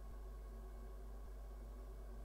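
Faint room tone: a steady low electrical hum, with a faint low tick about once a second.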